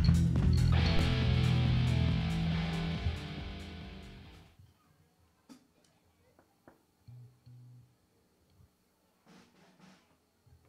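Amateur rock band with drum kit and electric guitars playing the last beats of a song, then a held final chord with cymbals ringing out that stops sharply about four and a half seconds in. After that, near silence with a few faint clicks and low hums.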